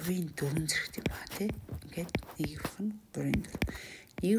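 Speech: a single voice talking softly, with short sharp clicks between the words.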